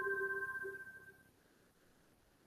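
A single struck chime-like note, in the manner of a glockenspiel or vibraphone bar, ringing with a few bell-like overtones and fading away within about a second and a half.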